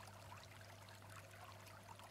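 Near silence: a faint, steady wash of flowing stream water with a low, steady hum beneath it.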